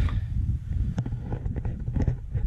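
Wind rumbling on the microphone, with a sharp knock near the start as rubbish is pushed through the flap of a plastic litter bin, and a second knock about a second in.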